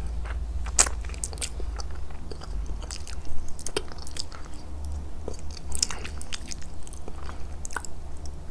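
Close-miked chewing: wet mouth clicks and a few crunches, scattered unevenly over a steady low hum.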